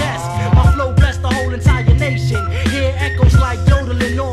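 Underground hip-hop track: a drum beat over a deep, steady bassline, with a vocal line running over it.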